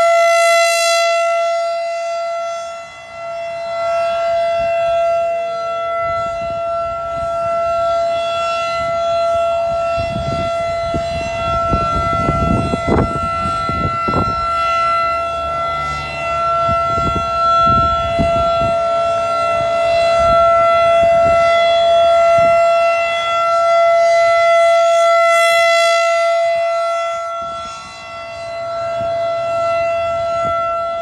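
Federal Signal 2001-SRN DC outdoor warning siren sounding a steady Full Alert tone. Its loudness rises and falls as the rotating horn sweeps around, dipping twice about 25 s apart. A stretch of low rumbling noise runs under the tone in the middle.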